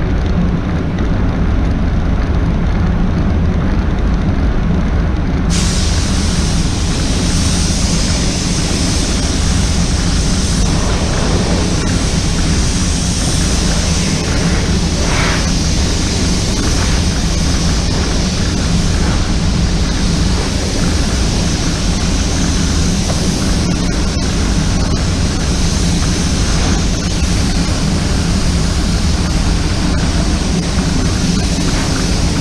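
Steady rushing air noise of an automotive paint booth while a car is spray-painted, with a brighter hiss that joins suddenly about five seconds in and holds.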